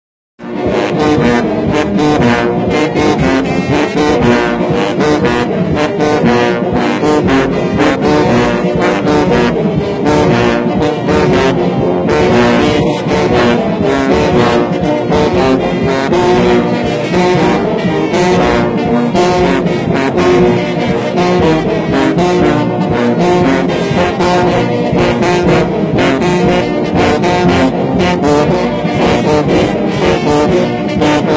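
Brass band playing loudly, with a row of sousaphones carrying the low bass lines under the other brass.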